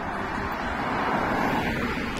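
A car driving past on the road, its tyre and road noise swelling as it comes near and passes, loudest a little past the middle.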